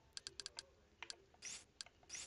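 Faint, quick clicks of remote-control buttons being pressed to step through an on-screen keyboard: a fast cluster of clicks in the first half-second and a few spaced ones later, with a short soft hiss about one and a half seconds in.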